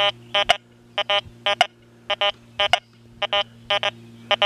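XP Deus 2 metal detector's remote control sounding short electronic beeps in a two-tone program, about two a second, often in pairs, as the coil is swept back and forth over a silver dime lying with a small nail.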